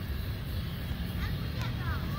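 A steady low rumble, with faint high voices from a distance coming in about a second and a half in.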